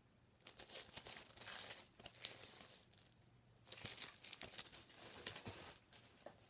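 Plastic outer sleeve of an LP album box crinkling and rustling as it is handled, in two stretches of about two seconds each.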